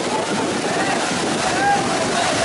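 Steady rush of river water over rocks under the chatter and calls of a crowd of bathers, with one voice rising above the rest near the end.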